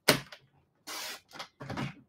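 Cardstock being handled on a paper trimmer: a sharp click right at the start, then a few short sliding and rustling scrapes as the sheet is positioned.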